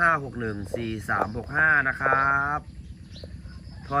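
A man speaking Thai, with one drawn-out syllable about two seconds in, then a pause of about a second before he speaks again. Faint, steady, high cricket chirring runs underneath.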